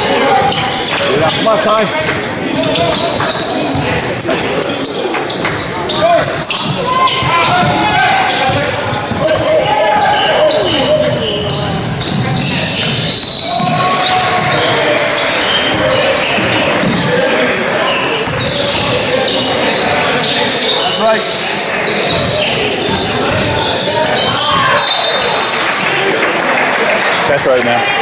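Basketball game in a gym: the ball bouncing on the hardwood court amid players' footwork and voices calling out, echoing in the large hall.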